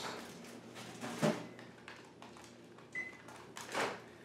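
Over-the-range microwave oven being worked: a single short electronic beep about three seconds in, then a clunk of its door, with a few faint knocks and clicks before.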